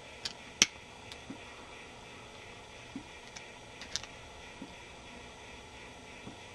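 Scattered small clicks and scrapes of a screwdriver tip prying along the crimped aluminium seam of an old twist-lock electrolytic capacitor can to uncrimp it. The sharpest click comes a little over half a second in.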